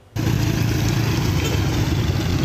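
Motorcycle engine running steadily, cutting in abruptly a moment in.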